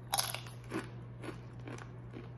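Tortilla chip bitten with a crunch just after the start, followed by about three fainter crunches as it is chewed.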